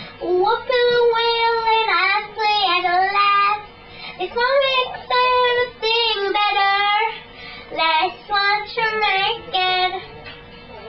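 A girl singing a melody in a high voice, in phrases of a second or so with short breaths between them.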